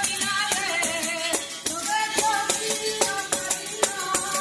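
Spanish traditional folk music: singing over a steady beat of rustic hand-percussion strikes, about two or three a second.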